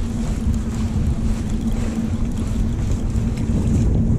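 Wind buffeting the microphone over a steady low engine hum, as of a boat running on the harbour.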